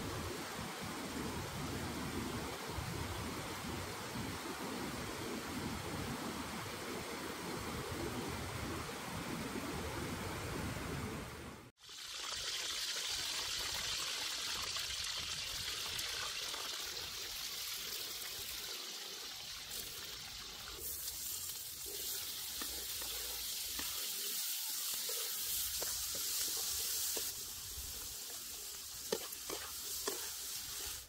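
Water rushing steadily over rocks in a stream. About twelve seconds in it cuts off suddenly, and hot oil sizzles steadily as whole light-green peppers fry in a pan.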